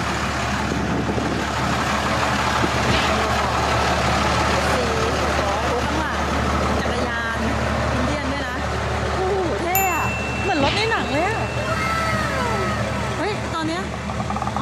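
A rusty rat-rod cab-over truck's engine running with a steady low rumble. Voices of people nearby come in over it in the last few seconds.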